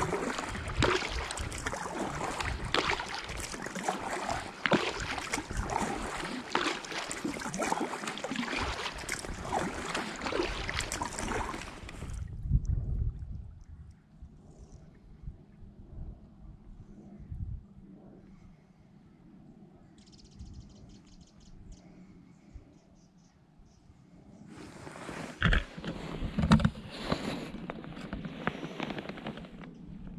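Kayak paddling: paddle strokes with water splashing and dripping off the blades for about twelve seconds, then the sound drops suddenly to a quiet glide with faint water sounds. Near the end, a few knocks and rustles.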